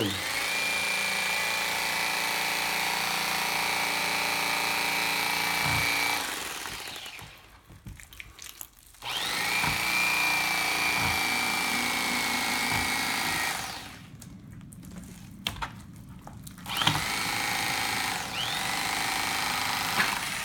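Electric fillet knife running with a steady whine as it slices the skin off a northern pike fillet. It runs in three stretches: it winds down about six seconds in, starts again about two seconds later, stops again about midway, and spins back up near the end.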